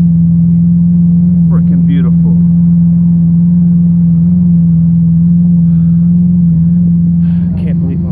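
A car engine idling with a steady, even drone that holds its pitch throughout. Brief voices are heard about a second and a half in and again near the end.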